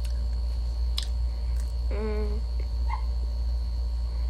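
A steady low hum throughout, with a few light clicks and rustles as food is handled in a crumpled paper towel. About two seconds in there is a brief hummed vocal sound.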